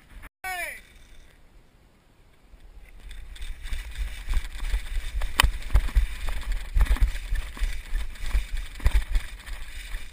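Running footsteps over sand and debris, picked up by a body-worn camera along with wind and rubbing on its microphone, with a few sharper knocks. The noise builds from about three seconds in, after a brief voice fragment and a quiet spell at the start.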